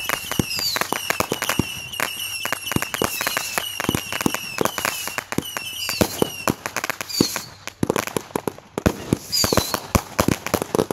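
Consumer fireworks going off in rapid succession: a dense run of sharp bangs and crackles from aerial cakes, with a high whistle running under them for the first six seconds or so. Single falling whistles come about seven and nine and a half seconds in.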